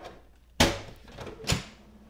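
Plastic cartridge access door of an HP DeskJet 4155e inkjet printer pulled open by hand: a sharp plastic clack about half a second in, then a lighter click about a second later.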